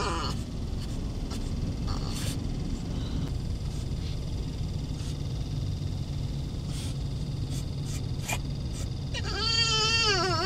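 Dog whining in a high, wavering cry from about nine seconds in, over a steady low rumble inside the car. The owners take the crying as the dogs smelling their returning owner.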